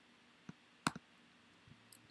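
A few short, sharp clicks of a computer mouse or keyboard, the loudest a little under a second in, over faint room tone.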